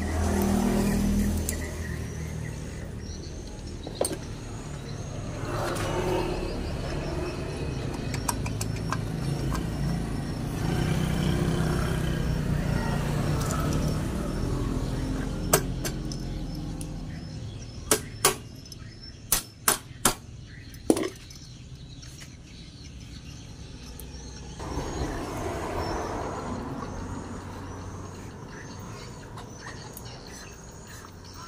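Metal engine parts being handled during assembly: a few sharp clicks and knocks, clustered about two-thirds of the way through, as a cylinder block is worked down over its studs. Underneath runs a low rumble of motor traffic that fades out about halfway, with repeated short bird chirps near the start and near the end.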